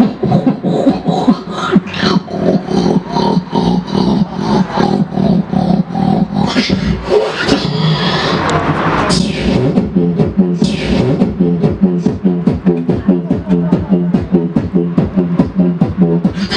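Music track built on fast beatboxed vocal percussion over a steady low held note. A couple of whooshing sweeps come in the middle.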